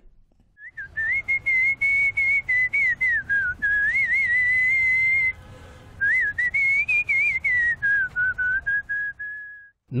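A man whistling a song melody, with warbling trills and gliding notes and a short break about halfway, ending on a long held note.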